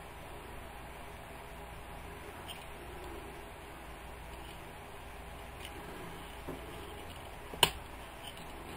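Plastic Transformers Prime Arcee deluxe action figure being handled and folded during its transformation: faint small clicks of plastic parts, then one sharp plastic click near the end as a part snaps into place.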